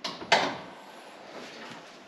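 Hood latch of a Toyota Supra being released to open the bonnet: two sharp clicks within the first half-second, the second louder.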